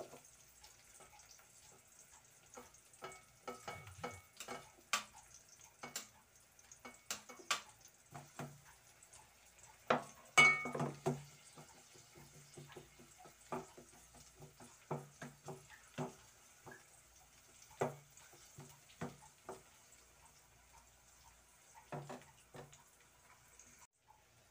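A metal spoon stirring in an aluminium cooking pot, with irregular clinks and scrapes against the pot, the loudest cluster about ten seconds in, over a faint sizzle of onion and garlic sautéing.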